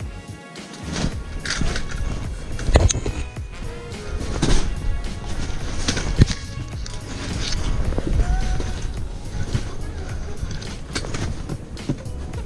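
Background music with irregular knocks, scrapes and rustling of clothing and fishing gear handled close to a head-mounted camera; the sharpest knocks come about three, four and a half and six seconds in.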